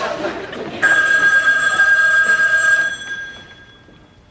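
Telephone ringing: one ring lasting about two seconds, starting about a second in and fading out near the end.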